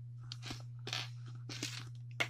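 A few soft, scattered clicks and scrapes of a handheld clamp meter and its test leads being handled, over a steady low hum.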